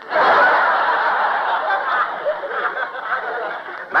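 A studio audience laughing at a punchline in an old radio broadcast recording. The laughter breaks out all at once and slowly dies down.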